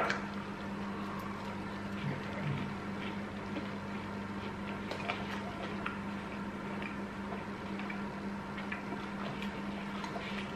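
A person chewing a mouthful of sticky glazed streaky bacon, with faint scattered wet mouth clicks, over a steady low hum.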